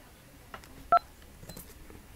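A single short DTMF keypad tone about a second in, played by the Mobile Partner dialler as a digit of the USSD code *131# is entered. A few faint clicks come before and after it.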